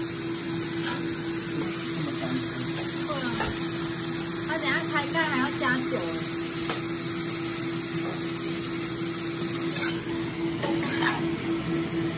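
Chicken and vegetables stir-frying in a wok: steady sizzling, with a spatula scraping and turning the food, over a constant hum.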